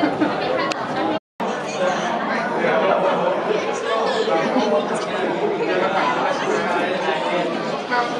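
Many people talking at once, a crowd's overlapping chatter. It cuts out completely for a split second about a second in.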